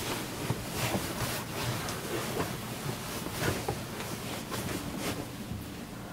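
Rustling and soft bumps of a person shifting and settling face down on an upholstered bed cushion, with clothing and bedding brushing against it in irregular bursts.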